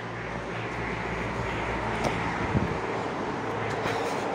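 Steady outdoor background noise, a low hum under an even hiss, with a couple of faint knocks about two seconds in and again shortly after.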